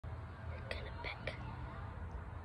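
A person whispering, in a few short breathy sounds, over a steady low rumble.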